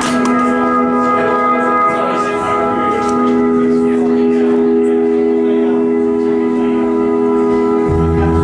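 Opening of a live rock band's song: a held, sustained chord that shifts to a new chord about three seconds in, with voices murmuring in the room underneath.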